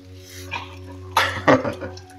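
A dog barking twice in quick succession, two short, sharp barks a little over a second in.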